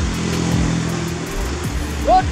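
Water running steadily from a PVC pipe into a steel drum tank, a continuous rushing, with music playing over it.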